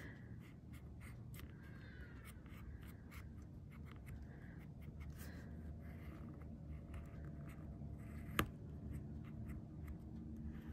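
Embossing tool tracing lines on metal tape: faint, scratchy drawing strokes, with one sharp click a little past eight seconds in.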